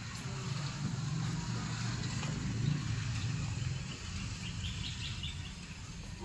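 Outdoor ambience on an open balcony: a steady low rumble, with a short run of faint high chirps about four and a half seconds in.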